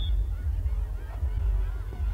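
Wind buffeting the microphone as a heavy, uneven low rumble, with faint distant voices from a crowd.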